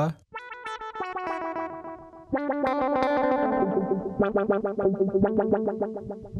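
Electric guitar played through a Eurorack modular effects chain, with each picked note triggering an envelope that sweeps a filter: an auto-wah that opens bright on the attack and closes as the note decays. A few held notes come first, then a quick run of short repeated notes from about four seconds in.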